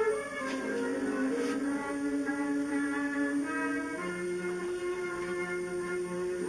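Concert wind band playing slow music in long held notes, several parts at once; a lower note comes in about four seconds in.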